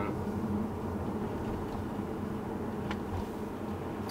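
Steady low road and tyre rumble inside the cabin of a Tesla Model S electric car driving at about 40 km/h, with a faint steady hum and no engine sound. A single small click about three seconds in.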